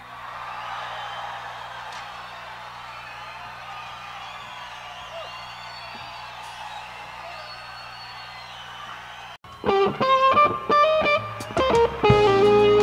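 A steady low amplifier hum under faint audience noise with whistles, in a pause between songs. About nine and a half seconds in, an electric guitar comes in loudly with a run of picked single notes.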